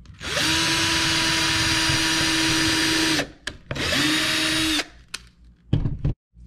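Cordless drill boring a pilot hole into a wooden board: a run of about three seconds, a brief pause, then a second, shorter run of about a second, the motor's pitch rising as it starts and falling as it stops each time. A couple of short knocks follow near the end.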